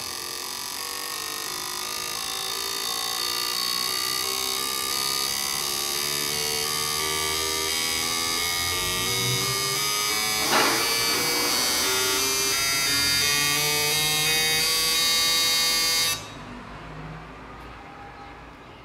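Nexotron fuel injector test bench running a flow test on four cleaned fuel injectors: a steady electric buzz from the pump and the pulsing injectors spraying into graduated cylinders, rising slowly in pitch. It cuts off suddenly near the end as the test stops.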